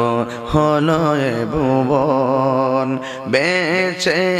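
A man's voice chanting a sung passage of a Bangla waz sermon, holding long notes with a wavering vibrato. There is a short dip just before a new phrase near the end.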